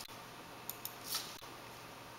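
Computer mouse button clicks: a quick pair of clicks under a second in, a brief rustle, then another click, over a faint steady room hum.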